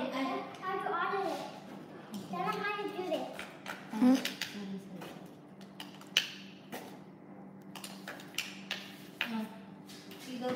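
A young child's voice in short bursts, then light clicks and taps of small plastic toy pieces being handled, scattered through the second half.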